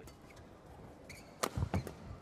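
A badminton racquet strikes the shuttlecock sharply once about one and a half seconds in during a rally, followed by a couple of duller thumps, likely players' feet on the court.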